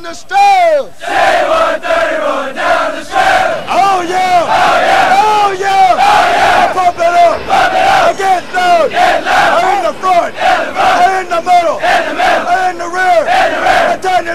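A platoon of male Marine recruits shouting a chant in unison, a dense mass of voices in a steady pulsing rhythm. It opens with a long falling yell, then the full group comes in about a second in.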